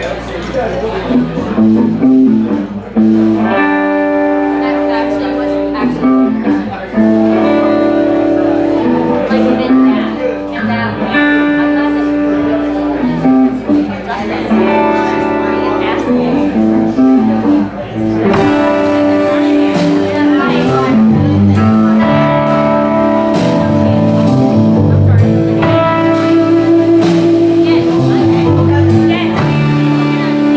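Live blues-rock band playing: electric guitars riffing over bass and drums, growing busier with more cymbal about two-thirds of the way in.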